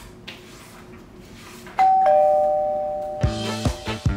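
Doorbell chime: two notes, a higher one and then a lower one, struck about two seconds in and left ringing for more than a second as they fade.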